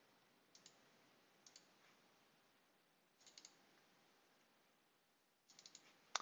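Near silence broken by faint computer mouse clicks: one about half a second in, another a second later, a short cluster past the middle and a quick run of several near the end.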